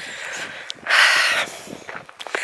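A walker's breathing close to the microphone, with one heavy breath about a second in.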